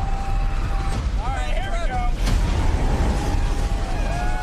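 Tornado movie trailer sound mix: a heavy, continuous low rumble with people whooping and yelling over it, and a sharp hit a little past halfway.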